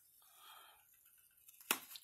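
Faint rustle of a paper planner sticker being peeled off a planner page, with a sharp tick near the end.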